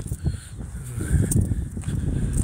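Wind rumbling on a phone's microphone, with a few faint footsteps on gravel as the person holding it walks.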